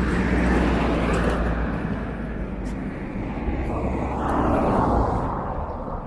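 A light flatbed truck driving past on the street, its low engine rumble and tyre noise loud at first and fading away about five seconds in. A second swell of road noise rises around four seconds in.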